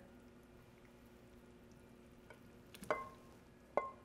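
Two light metallic clinks with a short ring, about three and four seconds in: a saucepan touching the rim of a stainless steel mixer bowl as melted chocolate mixture is poured in. Between them it is quiet.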